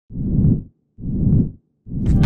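Intro sound effect: three deep swelling whooshes about a second apart, each building up and then cutting off sharply, the last running into the start of the theme music.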